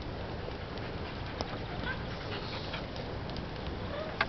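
A dog moving about on loose, freshly dug soil, with faint panting and a few light scrapes of its paws over a steady low rumble.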